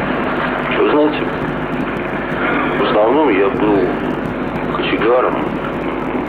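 Indistinct, muffled speech in short phrases, about one, three and five seconds in, over a steady noise bed with a low hum, typical of an old low-fidelity interview recording.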